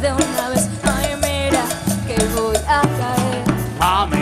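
Live tropical dance band playing an instrumental passage: a steady repeating bass line, sustained melodic lines and regular percussion, with no vocals.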